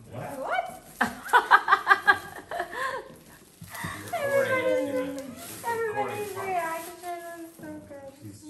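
A woman laughing and exclaiming in excitement: a quick run of short laughs about a second in, then drawn-out voiced exclamations that rise and fall in pitch.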